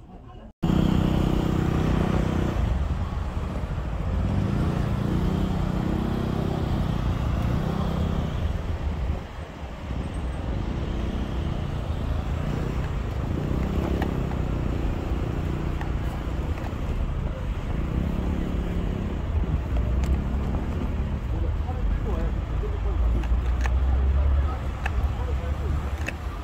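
Road traffic on a snowy city street: cars passing with a steady low rumble, starting abruptly about half a second in.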